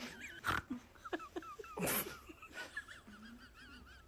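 A woman's staged sneeze with a squirt from a hidden spray bottle about two seconds in, after a shorter sharp hiss about half a second in. A faint, high, wavering whine sounds underneath.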